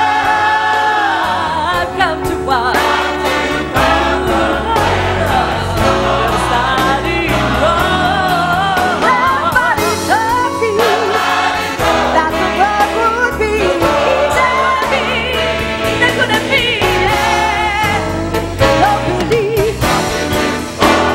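Gospel choir singing behind two women lead singers with vibrato, accompanied by a band with keyboard and a steady beat.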